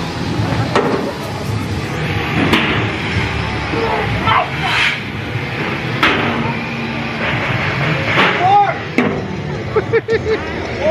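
Background music and crowd voices, with several sharp bangs spread through it and a short shout near the end.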